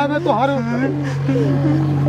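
A jeep engine idling with a steady low hum under people's voices talking.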